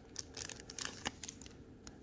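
Faint crinkling and light clicks of a plastic card sleeve and rigid top loader being handled, a scatter of small ticks and rustles.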